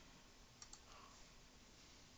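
Near-silent room tone with two faint, quick computer input clicks a little over half a second in, as the sign-in is submitted.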